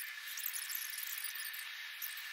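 A steady, thin hiss with a faint high steady tone running through it and no low end.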